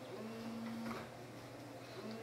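Quiet room tone with a faint steady low hum.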